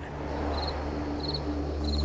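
Crickets chirping in short, pulsed chirps a few times over the two seconds, over a low steady drone.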